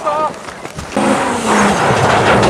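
Rally car engine coming into earshot about a second in, its pitch sagging slightly as it draws closer and louder, with a rising rush of tyre and road noise.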